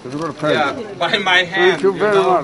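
A person's voice speaking Romanian, the pitch wavering.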